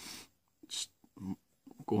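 A man's breath and brief hesitant vocal sounds in a pause between spoken phrases, with a short hiss partway through.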